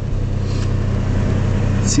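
2006 GMC Envoy's 4.2-litre inline-six engine idling, a steady low drone.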